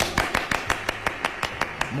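Hands clapping quickly and evenly, about seven claps a second.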